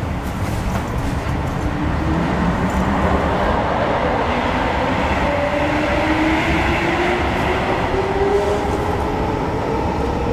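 Interior of a Hamburg S-Bahn class 472 electric train pulling away from a station. The traction motor whine rises slowly in pitch as the train gathers speed, over a steady rolling rumble.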